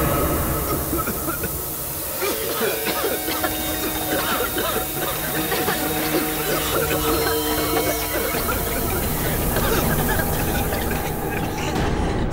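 A gas canister hissing steadily as it pours out smoke, under dramatic background music; the hiss cuts off near the end.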